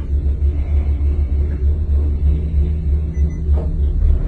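Steady low rumble inside a moving gondola cabin as it rides the cable up the mountain. A faint steady hum joins about two seconds in.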